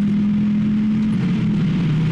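Volvo C30 T5's turbocharged 2.5-litre five-cylinder petrol engine pulling in third gear, heard inside the cabin through a non-standard exhaust. Its steady tone climbs slightly, then drops to a lower pitch about a second and a half in.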